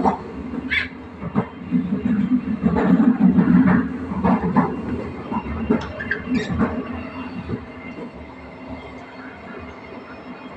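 Passenger coach running along the track: a steady rumble from the wheels with scattered clicks and knocks. It is loudest in the first four seconds and quieter after about five seconds.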